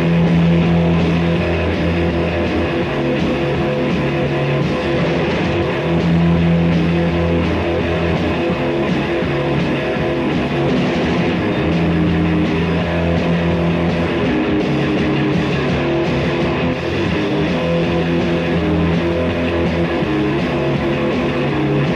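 Guitar-led lo-fi rock band playing, with a low bass figure that comes round about every six seconds.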